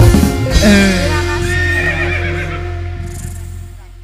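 A live band finishing a song: a final accented hit, then a held, wavering note gliding downward over a lingering low sustain, the whole sound dying away steadily.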